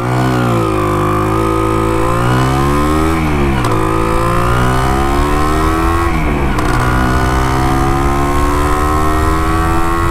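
1975 Can-Am 250 TNT's single-cylinder two-stroke engine accelerating through the gears. Its pitch rises, drops sharply at two upshifts about three and a half and six and a half seconds in, then climbs again and steadies at cruising speed. The Bing carburettor has been rebuilt and the needle set one notch lean.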